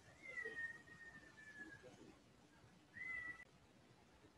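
Two faint, high-pitched animal cries in the background. The first is long and falls slowly in pitch; the second is short and comes about three seconds in.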